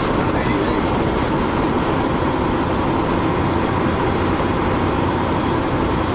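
Steady road and engine noise inside the cabin of a moving car.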